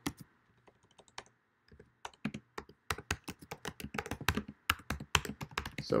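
Typing on a computer keyboard. There are a few scattered key clicks at first, then a quick, steady run of keystrokes from about two seconds in as a short line of text is typed.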